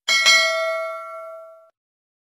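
Notification-bell 'ding' sound effect for the bell icon being clicked: a bright, metallic ring that starts suddenly and fades away over about a second and a half.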